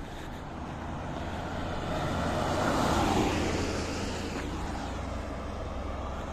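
A white minibus driving past on a wet road. The tyre and engine noise swells to a peak about halfway through, then fades as it moves away.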